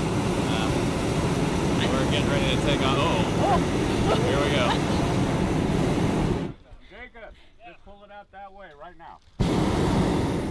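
Hot air balloon propane burner firing in a loud, steady roar overhead. It cuts off suddenly about six and a half seconds in, leaving voices in the basket, then fires again near the end as the balloon heats up for lift-off.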